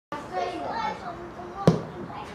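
Voices of spectators talking and calling, then a single sharp thud of a football struck hard for a free kick about one and a half seconds in.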